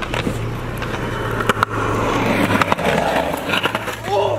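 Skateboard wheels rolling on concrete, a steady rumble, with a couple of sharp clacks from the board partway through.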